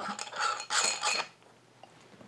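Threaded red locking ring on a star tracker's mounting plate being screwed tight by hand: metal parts scraping and clinking for a little over a second.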